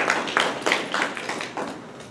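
A small audience applauding: a scatter of separate hand claps, a few a second, thinning out and fading toward the end.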